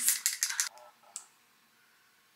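A tube of Urban Decay Lip Bond liquid lip colour shaken hard before use, rattling about six or seven times a second, stopping under a second in. A single click follows a little after a second in.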